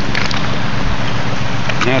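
Suction gold dredge's engine running steadily across the river, heard as a loud, even drone while the dredge is working.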